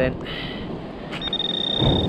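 Garrett AT Pinpointer sounding a steady high-pitched alert tone that starts a little past halfway, meaning metal is right at its tip.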